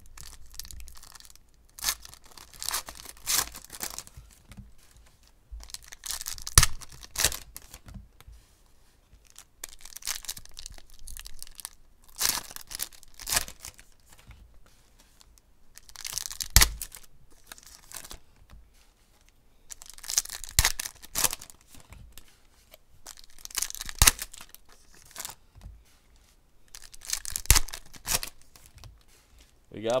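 Foil wrappers of trading card packs being torn open and crinkled by hand, in bursts of tearing and crackling every few seconds as one pack after another is opened.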